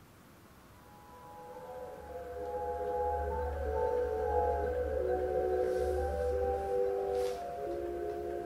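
A slow, tinkling music-box melody of bell-like notes fades in about a second in and grows louder, over a low droning hum.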